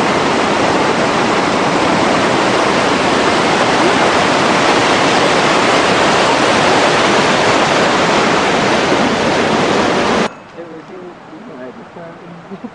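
Loud, steady rush of a rocky mountain stream pouring over rapids, cutting off abruptly about ten seconds in.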